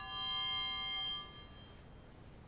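Altar bell, struck once at the elevation of the chalice, ringing on with several clear overtones and fading out about one and a half seconds in.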